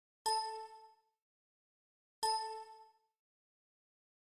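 Two identical bell-like dings about two seconds apart, each struck sharply and ringing out in under a second, with a clear low tone and an octave above it.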